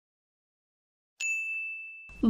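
A single bright electronic ding about a second in, one steady high tone that rings on and slowly fades. It is a quiz answer-reveal chime marking the end of the countdown.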